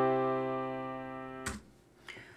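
Software piano chord from a looping MIDI ii–V–I progression, held and fading, then cut off with a click about one and a half seconds in as playback stops.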